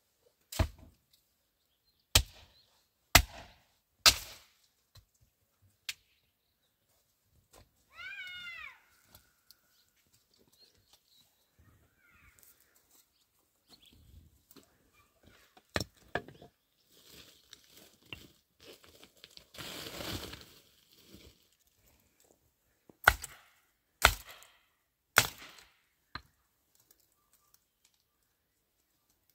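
Hatchet chopping dry shrub wood: four sharp chops near the start and four more near the end. In between come footsteps and the rustle of brush on stony ground, and about eight seconds in, a short falling animal call.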